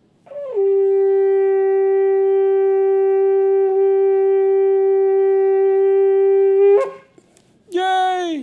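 A long twisted shofar blown in one long, steady blast of about six seconds. The note slides down briefly as it starts and flicks up as it stops. A short second blast near the end falls away in pitch.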